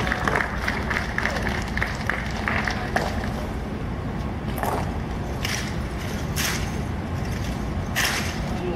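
Ceremonial rifle drill: a few sharp slaps and clicks of hands on rifles in the second half, about a second apart, over a steady outdoor murmur of spectators.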